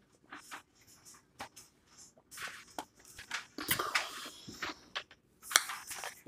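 A person drinking ice water from a stemmed glass, with a string of soft gulps and small clicks of swallowing. The glass is set down near the end, with a few sharper knocks.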